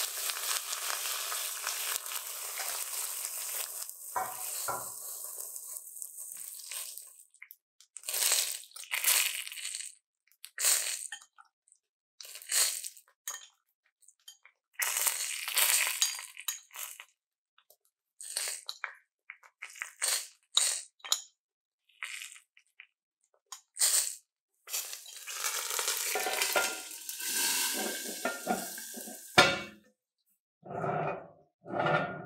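Food sizzling in a hot cast-iron Dutch oven as the lid comes off, a steady hiss for about seven seconds. Then short bursts of sizzling and clinks of a metal spoon on a ceramic bowl and the pot as seasoned liquid is spooned over the chicken, with the cast-iron lid set back on near the end.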